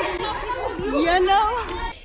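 Speech only: girls' voices talking and chattering close to the microphone, with no clear words.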